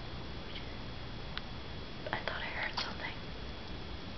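Steady faint hiss, with a short stretch of soft whispering about two seconds in and a small click just before it.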